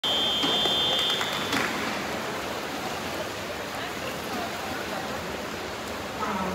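A referee's whistle blows one steady high note for about a second, the long whistle that calls swimmers up onto the starting blocks. It is followed by the steady hiss and murmur of an indoor pool hall.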